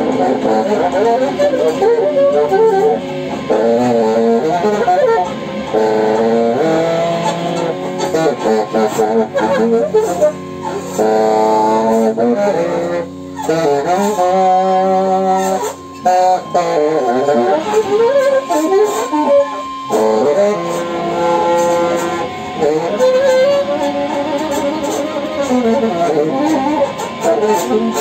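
Free-improvised live music: saxophone and keyboard/electronic sounds in shifting, gliding and held notes, with a steady high tone underneath and a couple of brief breaks partway through.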